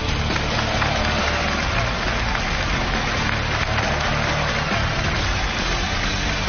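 Studio music playing under a studio audience applauding.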